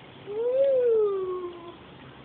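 A person's wordless whoop: one call, rising then falling in pitch, lasting just over a second.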